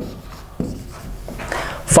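Marker pen writing on a whiteboard, a few short scratchy strokes.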